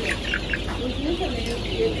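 A crowded flock of four-week-old white layer chickens calling: many short, overlapping calls from birds all over the pen.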